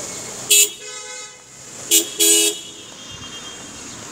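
Car horn honking three short toots, the third a little longer than the first two, over steady street traffic noise.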